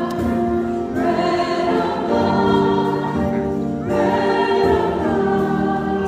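Choir singing a hymn in long held notes, the phrases pausing briefly about a second in and again near four seconds.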